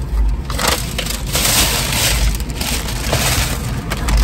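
Paper fast-food takeout bag rustling and crinkling as it is handled and opened, loudest from about a second and a half in.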